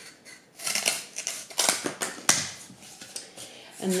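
Scissors cutting through corrugated cardboard: a series of short snips, the loudest a little over two seconds in.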